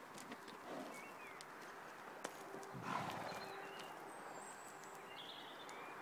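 Faint sounds of a horse moving about on soft dirt ground close by, with one brief breathy rush about three seconds in.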